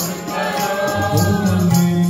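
Sikh Gurbani kirtan: voices singing to a harmonium, with tabla keeping a steady beat.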